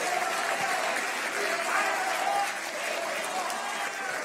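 An audience applauding steadily, with voices calling out over the clapping.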